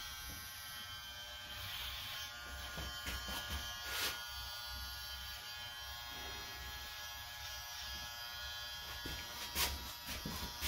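Electric hair clipper buzzing steadily, with a couple of short clicks about four seconds in and near the end.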